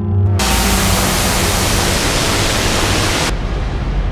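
Electronic noise in a computer music composition: a loud, dense burst of hiss comes in about half a second in and cuts off suddenly near the end, over a low rumbling drone.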